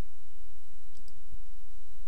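Steady low hum and crackle of a poor-quality microphone's background noise, with a few faint clicks about a second in.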